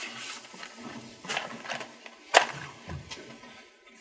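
A wooden match struck on the side of a matchbox: two short, sharp scrapes about a second apart, the second the louder.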